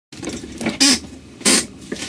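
Camera being handled close to its microphone while it is set up: two short bursts of rustling noise about half a second apart, over faint low sounds.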